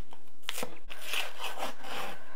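Paper baking case being torn and peeled away from a panettone loaf: soft rustling and tearing of paper, with a small click about half a second in.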